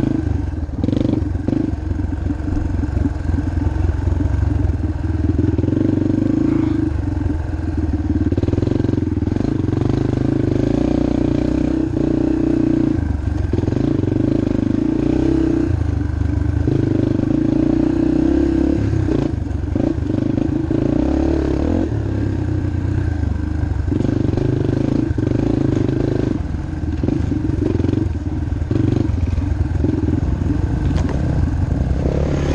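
Yamaha TT-R230 trail bike's air-cooled four-stroke single-cylinder engine under way, its revs rising and falling every few seconds as the rider works the throttle and gears.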